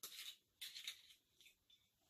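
Near silence, with a few faint, short rustles and ticks of a glass rum bottle being handled over a cocktail shaker in the first second.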